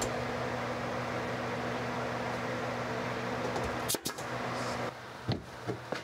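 Craftsman pancake air compressor running with a steady electric-motor hum while it feeds a pneumatic nailer. The hum stops with a sharp click about four seconds in, and a few faint clicks follow.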